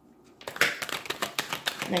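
A tarot deck being shuffled by hand: a quick run of sharp card clicks, several a second, starting about half a second in.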